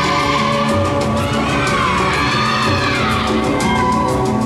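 Accompaniment music for a synchronised swimming solo routine: sustained chords under a high melody line that swells and bends up and down in pitch through the middle, the beat dropping away for a moment.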